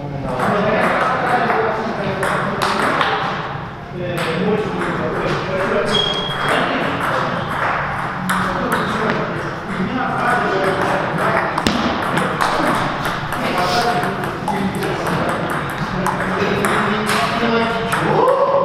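Table tennis balls clicking sharply against tables and bats at irregular intervals, over steady talk from people in the hall.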